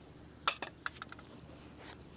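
Metal tubes of a folding camping cot's leg frames clinking together as they are handled: one sharp clink about half a second in, then a few lighter clinks with a short ring.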